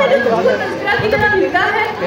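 Speech only: a girl talking into a microphone, with chatter in the background.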